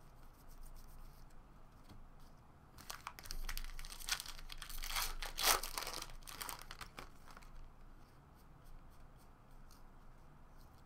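Foil wrapper of a baseball card pack being torn open and crinkled, loudest about halfway through. Light clicks of cards being handled come before and after.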